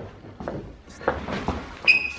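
A wall-mounted TV panel being swivelled round on its pivot by hand: a few soft knocks and clicks, then a brief high squeak near the end.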